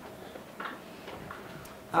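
A few faint clicks from a laptop being worked to advance a slide, over quiet room tone.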